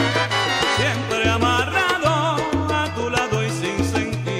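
Salsa music from a full band, with a steady bass line moving in short held notes under wavering held melody notes.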